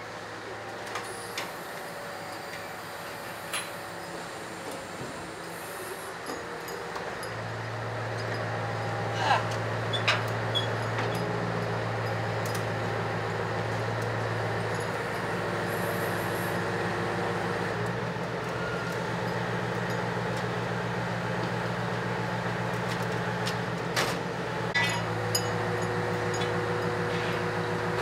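Steady mechanical engine hum that grows louder about seven seconds in and then holds, with occasional light metallic clicks and knocks, as a funfair ride trailer's floor section is lowered on cables.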